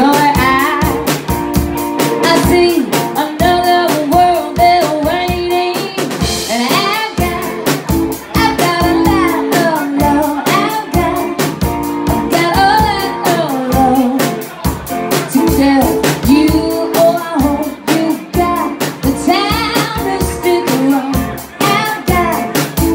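Live rock band playing a song: a woman singing lead over a drum kit keeping a steady beat and an electric guitar.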